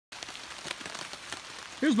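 Steady rain falling on a silpoly hammock tarp, a continuous hiss scattered with many small, irregular drop ticks.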